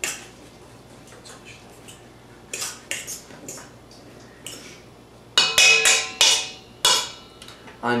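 A fork mashing avocados in a bowl. Scattered light knocks come first, then from about five seconds in a run of loud clinks as the fork strikes the bowl, which rings briefly after each hit.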